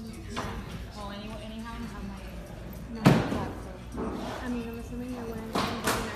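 Voices talking in the background, with one sharp thump about three seconds in and another knock shortly before the end.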